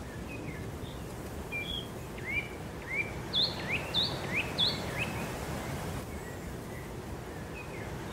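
Bird chirps, a run of short rising calls in the middle, over a steady low rumble from a distant Massey Ferguson 8735 tractor pulling a plough.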